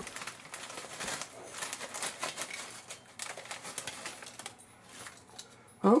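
Potato chips pouring out of a foil chip bag onto a ceramic plate: a rapid crackling patter of chips landing and rattling together, with the bag crinkling. It is dense for the first few seconds, then thins to scattered clicks.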